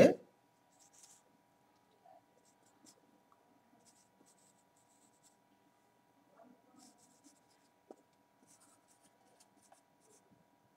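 Marker pen writing on a whiteboard: faint scratchy strokes in short runs with pauses between them, and a light tap about eight seconds in.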